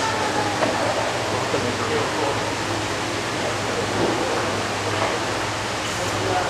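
Indistinct crowd chatter from many people, over a steady rushing background noise with a low hum.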